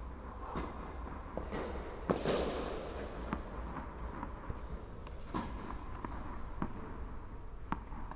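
Tennis balls bouncing and being struck: about seven separate sharp pops that echo in an indoor tennis hall, the loudest about two seconds in, over a low steady hum of the hall.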